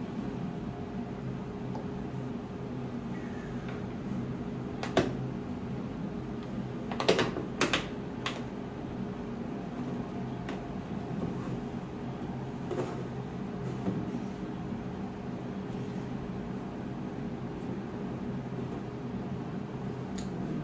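A few sharp plastic clicks and taps as a small 3D-printed window piece is handled and pressed into the opening of a 3D-printed plastic birdhouse body, a tight press fit; the loudest clicks come in a quick cluster about seven seconds in. A steady low hum runs underneath.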